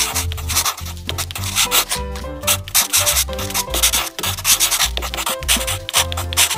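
Felt-tip marker rubbing back and forth on paper in quick, repeated scratchy strokes as it colours in a filled area, over background music with a steady bass line.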